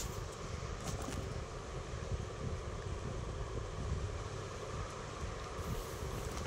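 Steady background noise, a low rumble under a faint hiss, with no clear event standing out.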